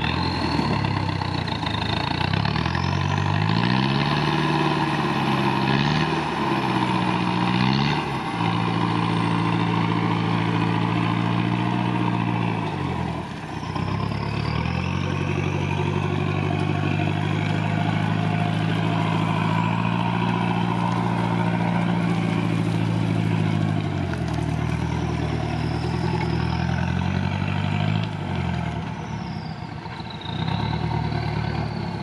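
Engine of a modified 4x4 off-roader working under load as it climbs a muddy, rutted hill trail: revs rise and fall in the first several seconds, hold steady through the middle, and drop sharply about thirteen seconds in and again near the end. A faint high whistle rises and falls above the engine at times.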